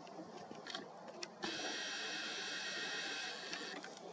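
Camera's power-zoom motor whirring steadily for about two and a half seconds as the lens zooms out, starting and stopping abruptly, with a sharp click just before it starts.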